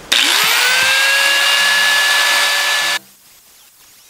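Angle grinder spinning up with a rising whine, then running at a steady high pitch as its disc cuts into a steel seat bracket. It cuts off abruptly about three seconds in.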